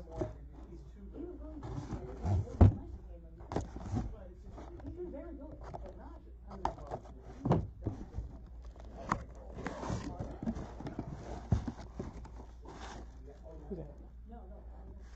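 Cardboard box being cut open with a box cutter and handled: scraping and slicing of the blade along the box, irregular knocks and taps of cardboard on the table, and paper rustling as the wrapped contents are lifted out near the end.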